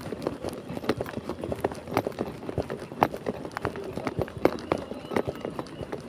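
Footsteps of a person walking across paved ground: a series of sharp taps, a step every half second or so.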